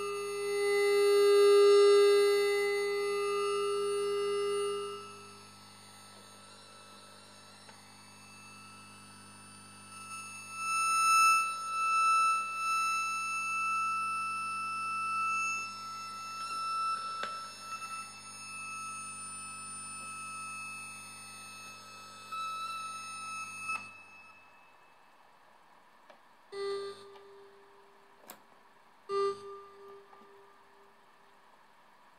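DIY Belgian Triple Project Synth playing steady electronic tones: a loud low tone for the first few seconds, then higher whining tones that swell and fade as the knobs are turned. They cut off suddenly about 24 seconds in, and two short beeps follow near the end.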